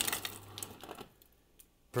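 Ice clattering from a Samsung fridge freezer's door dispenser into a glass tumbler, a quick run of rattles that thins out and stops about a second in.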